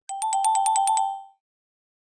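Short electronic chime sound effect: a rapid ringing trill that alternates between two close tones, about ten strokes a second, fading out after about a second.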